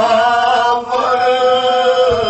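A man chanting solo in long, held notes, with a short break for breath about a second in.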